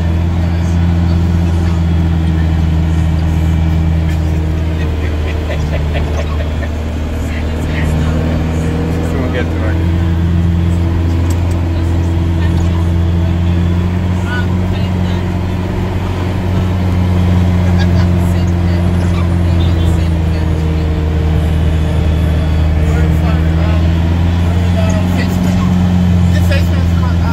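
Vehicle engine running in a steady low drone, heard from inside a car's cabin, its pitch drifting a little.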